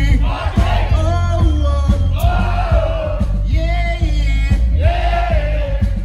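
Live reggae band playing with a heavy, steady bass line while voices sing a series of drawn-out phrases over it, with crowd noise.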